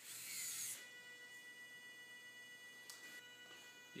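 Servo motors in a 3D-printed InMoov robot hand whirring and rasping for under a second as the fingers drive to a new position, then a quiet steady high whine while they hold, with a couple of light clicks.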